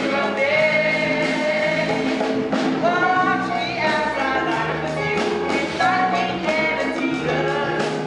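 A musical-theatre song sung live over instrumental accompaniment.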